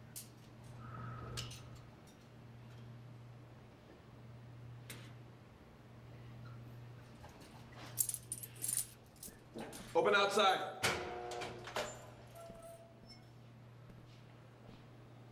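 Keys jangling in a few quick rattles about eight seconds in, followed by a short vocal sound, over a steady low hum of room tone with a few scattered clicks.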